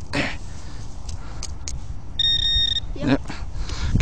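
A metal detector gives one high, steady electronic beep about half a second long, a little past halfway, signalling a metal target in the dug hole.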